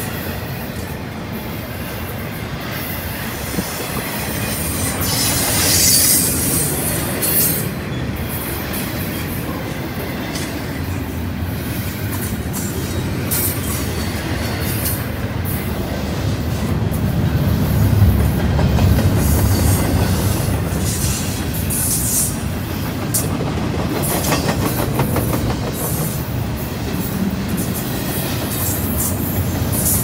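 Double-stack intermodal freight train's well cars rolling past close by: a steady rumble of steel wheels on rail, loudest about two-thirds of the way through. Brief high-pitched wheel squeals break through now and then.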